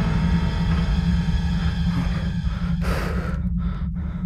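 Tense horror film score built on a steady low drone, with a brief swell of hissing noise about three seconds in.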